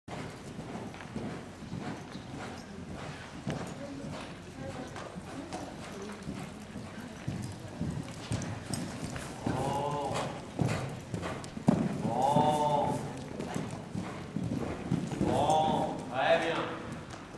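Hoofbeats of a cantering horse on arena sand, with a person's voice calling out a few times in the second half.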